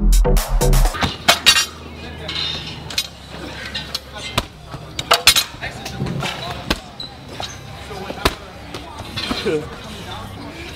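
Electronic dance music with a heavy beat stops about a second in. Gym room sound follows: metal clinks and knocks of dumbbells and weights, with voices in the background.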